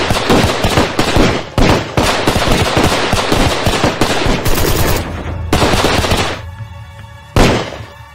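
Rapid automatic gunfire from several weapons in long continuous bursts over a music score. The firing breaks off about five seconds in, starts again for about a second, and a single loud blast comes near the end.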